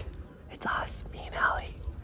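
A person whispering: two short breathy bursts of voice, about half a second and a second and a half in.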